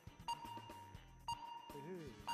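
Two faint electronic beeps about a second apart from a game-show countdown timer, over quiet background music. A voice comes in near the end.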